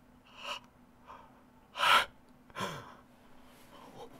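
A man gasping close to the microphone: three short, sharp breaths, the loudest about two seconds in, startled gasps of shock.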